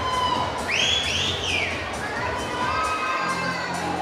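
Audience cheering, with high-pitched shouts and screams that are loudest about a second in.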